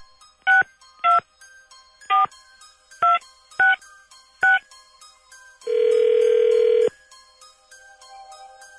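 A touch-tone phone number being dialled: six short DTMF key beeps at uneven spacing, then a single ringback tone of a little over a second as the call rings through.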